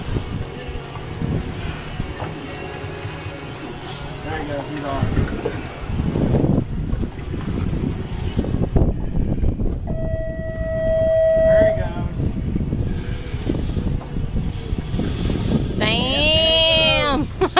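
Steady rumbling wind-and-water noise on an open fishing boat, with brief voices, a single steady tone lasting under two seconds about ten seconds in, and laughter starting at the very end.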